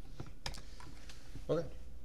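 Computer keyboard keys clicking as a few separate keystrokes are typed.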